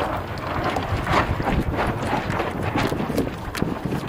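Choppy water slapping and splashing against the hull of a Hobie sail kayak under way, in irregular knocks, with wind rushing over the microphone.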